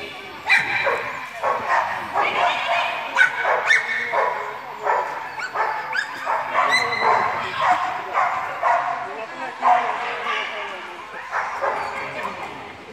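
A dog barking and yipping over and over, about one or two barks a second, the excited barking of a dog running an agility course, with a handler's voice calling out among the barks.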